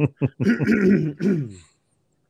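A man gives a short chuckle in a few quick bursts, then a longer raspy throat clearing.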